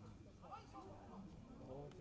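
Faint voices of players and spectators calling out across a football pitch.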